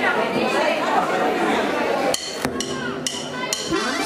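Audience chatter in a hall for about two seconds. The chatter then drops away and a few sharp knocks, each with a brief ringing tone, follow.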